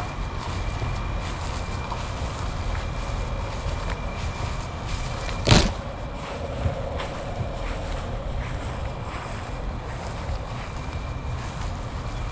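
Wind buffeting the camera's microphone, a steady low rumble, with one sharp knock about five and a half seconds in.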